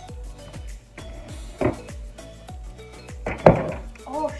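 Background music with a steady drum beat. Over it come two knocks of the crock pot being handled, one about one and a half seconds in and a louder one about three and a half seconds in.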